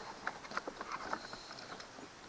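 Irregular plastic clicks and knocks as the ride-on toy's gear-shift lever and its plastic housing are gripped and worked by hand. The clicks come thickest in the first second or so and thin out after.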